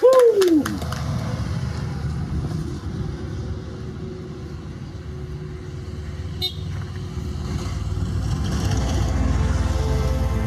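Low steady rumble of road traffic, growing louder near the end, with one brief high horn toot about six and a half seconds in.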